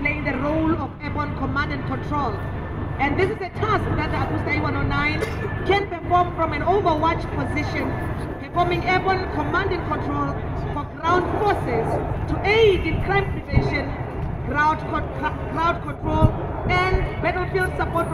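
People talking close by, over a low steady rumble.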